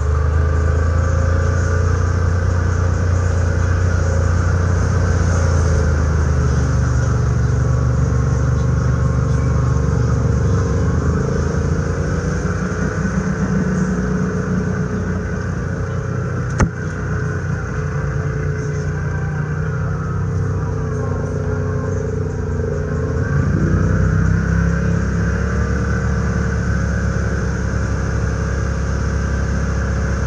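Side-by-side UTV engine running steadily at trail speed while driving through shallow water and mud, picking up a little about two-thirds of the way through. A single sharp knock about halfway through.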